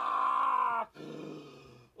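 A man groaning in pain after taking a punch to the stomach: a long, strained groan that breaks off just under a second in, then a lower, fainter groan that fades away.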